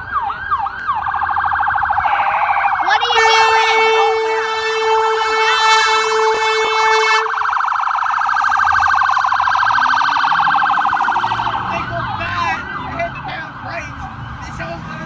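Fire truck siren passing in a fast yelp, with a long steady blast of its horn from about three to seven seconds in; near the end the siren slows into wider sweeps and fades.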